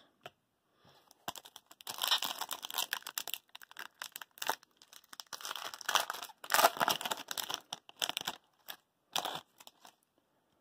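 Foil wrapper of a hockey card pack being torn open and crinkled in the hands: irregular crackling that starts about a second in and runs in clusters until near the end.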